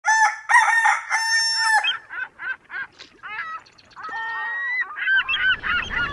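Rooster crowing, two short notes then one long held note, followed by a string of short bird calls.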